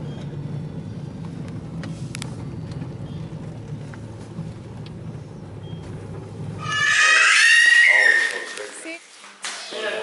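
Steady low engine and road rumble inside a car's cabin as it drives slowly. About seven seconds in this stops abruptly and a loud, high-pitched vocal squeal follows, lasting about a second and a half.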